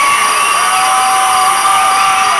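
Concert crowd screaming and cheering, many high-pitched held screams overlapping, some dropping in pitch as they trail off.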